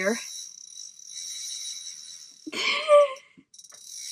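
Spinning reel's drag buzzing steadily as a hooked lake trout pulls line, cutting out for a moment a little past three seconds in. A short voiced grunt from the angler comes just before the break.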